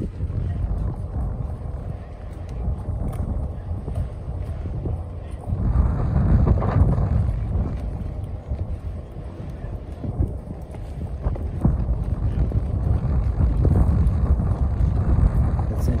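Wind buffeting the phone's microphone outdoors: a gusty, uneven low rumble that swells about six seconds in and again near the end.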